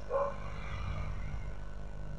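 Steady low hum of background room tone, with one faint short sound just after the start.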